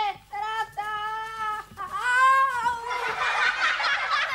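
A high voice crying a long drawn-out "Ááá" in several held pieces, the last one rising and falling. From about three seconds in, a group of children laughing and chattering.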